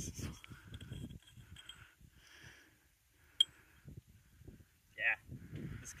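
Handling of a homemade steel pipe shotgun's parts: low rustling and scraping, with one sharp click a little past halfway as the pipe and its threaded cap are checked. A voice speaks briefly near the end.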